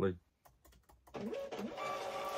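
Label printer running, a steady whir that starts about a second in and lasts about two seconds.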